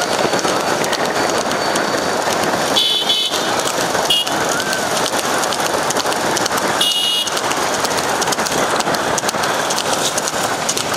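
Vehicle horns honking in short blasts about three seconds in and again about seven seconds in, over the steady noise of motorbikes following a horse-drawn racing cart.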